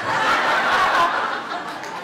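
Guests in a hall laughing together, loudest in the first second and dying down.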